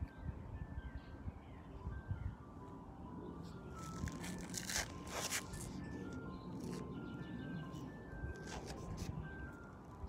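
Ice cream truck jingle playing faintly: a simple tinkly melody of short single notes that runs on throughout. About four to five seconds in come a few brief rustles close to the microphone.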